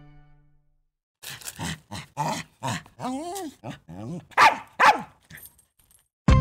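A small dog barking and yapping, about ten short barks with a whining, up-and-down yelp in the middle; the last two barks are the loudest. The end of a string music cue fades out just before the barking starts.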